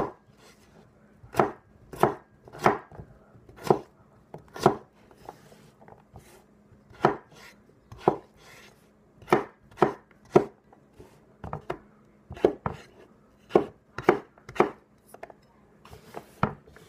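A McCullen S7 Camp Bowie knife with an 8-inch blade cutting through red potatoes and striking a wooden cutting board: about eighteen sharp chops at an uneven pace, with a pause of about two seconds some five seconds in.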